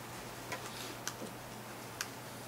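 Quiet room tone with a steady low hum, broken by a few faint, sharp clicks and a brief soft rustle.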